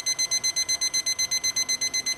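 Digital probe thermometer-timer alarm beeping rapidly and evenly, about eight high-pitched beeps a second, as the water temperature reads 212 °F, the boil.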